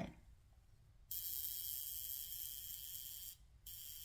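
Handheld high-frequency skincare wand running against the scalp, its neon/argon-filled glass electrode giving off a steady high-pitched electric hiss and buzz. It starts about a second in, cuts out briefly a little past three seconds in, and starts again.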